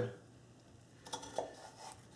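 Knife blade cutting down through a small stack of thin raw potato slices onto a wooden cutting board: three faint, short taps about a second in and near the end.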